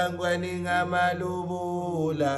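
A voice chanting a slow song in long held notes over a steady low hum.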